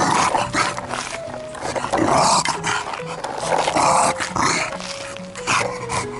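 A bulldog vocalising in several short bursts over background music.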